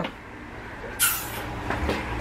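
Handling noise from a moving handheld camera: a short rustling hiss about a second in, over a low steady hum.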